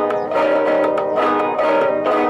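Ten-string classical guitar played solo: a steady flow of plucked notes over chords that ring on.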